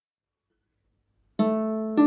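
Starfish Mamore Celtic harp: silence, then about a second and a half in, the first plucked harp strings ring out and begin to fade.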